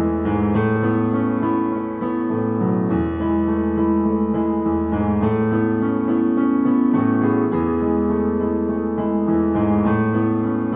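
Solo piano music played on an electronic keyboard: an original, flowing piece of chords over held bass notes that change every couple of seconds.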